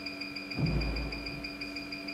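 Control-panel beep of a microneedle fractional RF machine, one high tone held steadily while the up arrow on its touchscreen is pressed and the depth setting steps upward, over a low steady hum. A brief low rumble sounds about half a second in.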